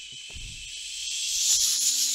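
A man hissing through his teeth to imitate an aerosol air-freshener (Febreze) spray, one long hiss that grows steadily louder as if the spraying is coming closer.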